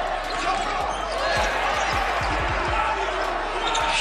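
A basketball being dribbled on a hardwood court during live play, its bounces coming as short low thuds several times a second, heard against the echoing background noise of a large gym.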